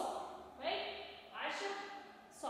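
Speech only: a woman's voice talking, in short phrases with brief pauses.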